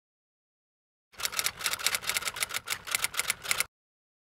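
Fast typing: a quick, even run of key clicks, about ten a second, starting about a second in and cutting off abruptly just before the end.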